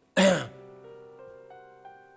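A person clears their throat once, loudly, just after the start. Soft background music follows, sustained keyboard-like notes entering one after another about three times a second.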